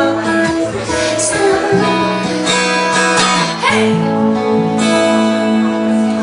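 Acoustic guitar playing an instrumental passage, chords strummed with sustained notes ringing between the strokes.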